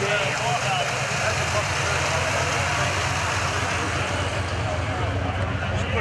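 Single-turbo Pontiac Trans Am V8 idling steadily, a low even hum that grows a little stronger in the second half, with faint crowd chatter behind it.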